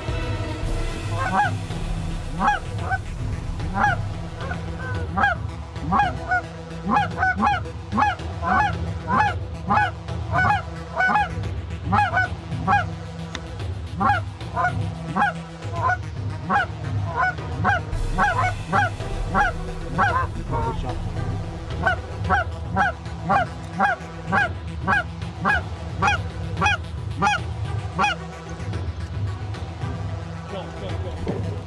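A flock of Canada geese honking over and over, many short calls a second or so apart, with a brief lull about twenty-one seconds in.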